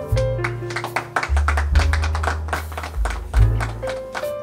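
Background music with deep held bass notes that change about every second or so, higher melody notes, and frequent short percussive hits.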